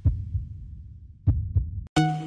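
Low, muffled thumps in lub-dub pairs, like a heartbeat, about one pair every 1.3 seconds in the intro soundtrack. The sound cuts out for a moment just before the end.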